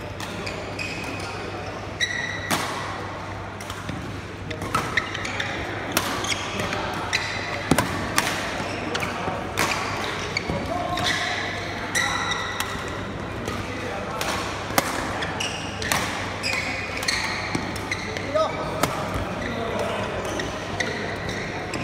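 Badminton rackets striking a shuttlecock in a rally: a quick, irregular run of sharp cracks, often less than a second apart, with short squeaks of shoes on the court.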